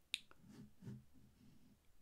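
Near silence, broken by a single sharp click just after the start and a couple of much fainter clicks.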